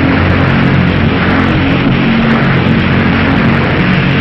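Loud, steady roar of a nuclear explosion sound effect, with held low tones underneath.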